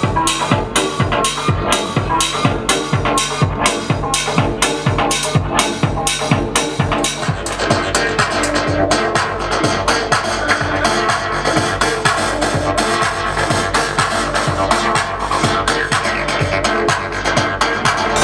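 Electronic dance music in a DJ's live house/techno mix through a club sound system, with a steady four-on-the-floor kick and hi-hat beat of about two beats a second. About halfway through the beat grows less distinct under a busier, denser layer of synth sound.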